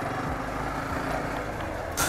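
Motorcycle engine running under a steady rush of wind noise on the microphone as the bike pulls away and gets moving.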